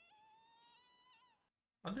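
A faint, drawn-out high-pitched cry of "What?!" from an anime character's voice, held for about a second with a slight rise before it trails off. A man starts speaking near the end.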